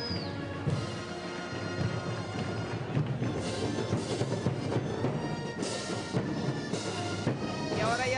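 Festival wind band playing a march, sustained brass and reed notes over heavy drum beats, with a few cymbal crashes in the second half.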